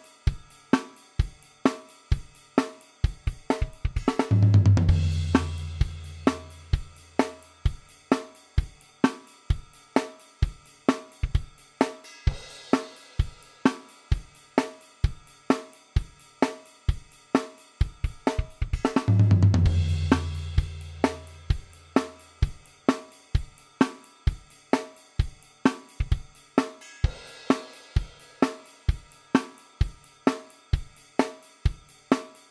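Programmed drum loop on a sampled acoustic drum kit (Superior Drummer), playing a steady basic 4/4 rock beat at 130 bpm with kick, snare and cymbals. About four seconds in and again near nineteen seconds there is a louder accent with a long low ring that dies away over about three seconds.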